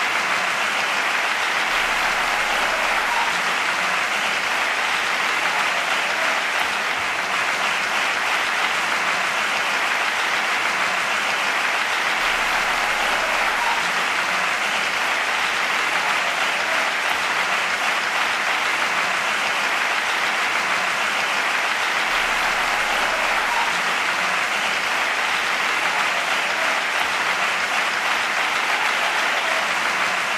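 Audience applauding: dense, even clapping that keeps up at a steady level without a break.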